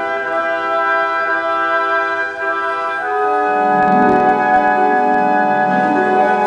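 A live pit orchestra playing classical ballet music in sustained chords. About three seconds in, lower instruments come in and the music swells louder.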